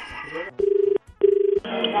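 Telephone ringback tone heard down a phone line: one double ring, two short buzzing pulses of a low steady tone a fraction of a second apart, the cadence of an Indian ringback while a call is connecting.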